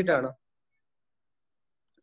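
A spoken word breaking off shortly after the start, then dead silence, with only a faint click near the end.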